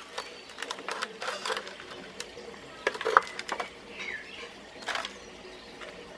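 Small clicks, scrapes and soil crumbling as a squash seedling with a dense root ball is prised out of a plastic seed-tray cell with a wooden-handled tool, the sharpest click about three seconds in.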